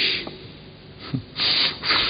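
Breathy, mostly voiceless laughter in a few short bursts of air, the longest about halfway through.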